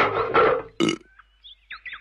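A cartoon sea turtle's loud burp, voiced for an anime dub after a drink of salt water. It lasts under a second and is followed by a few faint, short squeaky sounds.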